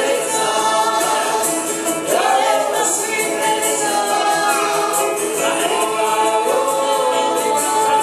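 Live bluegrass band playing: a woman singing lead over a picked banjo and a strummed acoustic guitar.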